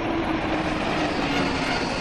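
Jet aircraft passing low overhead: a loud rushing roar with a low tone that slowly falls in pitch.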